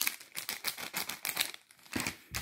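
Crinkling of a sealed foil air freshener packet being handled: a quick run of irregular crackles, with a short lull near the end.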